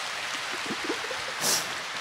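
Steady background hiss of the hall's microphone and amplification, with faint brief voice sounds and a short breathy hiss about one and a half seconds in.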